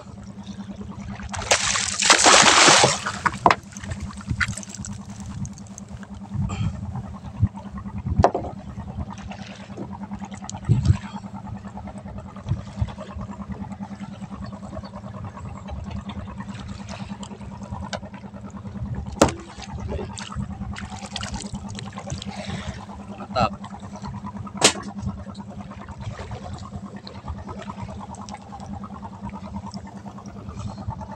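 A small fishing boat's engine idling with a steady low hum while water splashes against the boat. About two seconds in there is a loud splash as the trolling handline and the fish are hauled in, followed by a few sharp knocks against the boat.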